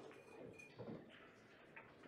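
Near-silent room tone with a few faint, light ticks and soft knocks.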